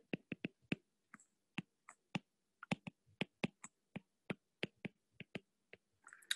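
Stylus tip tapping and clicking on a tablet's glass screen during handwriting: a faint, irregular run of short ticks, about three or four a second.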